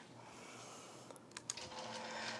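Faint handling at the needle of a longarm quilting machine: a few light clicks about a second in, then a faint steady machine hum setting in near the end.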